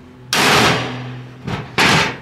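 Two hammer blows, about a second and a half apart, on a steel pry bar wedged in the door seam of a Stack-On steel gun cabinet, each a loud metallic clang that rings on afterwards: the locked cabinet door being forced open.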